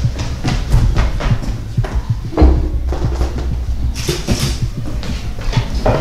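Irregular thumps and knocks of someone moving about in a hurry: footsteps on a wooden floor and objects being handled, with deep rumbling thumps among them.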